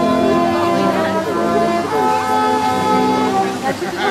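Music with slow, held notes moving from one pitch to the next, with voices talking over it.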